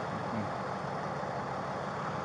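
Vehicle engine idling: a steady low hum.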